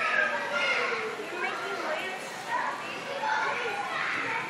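Several children's voices chattering and calling out over one another, with no single speaker clear.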